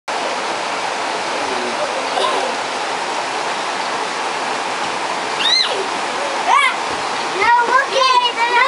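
Steady rushing of running water throughout, with two short high calls from a child a little past the middle and children's voices starting just before the end.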